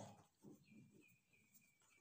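Near silence: room tone with faint scratching of a marker pen writing on paper.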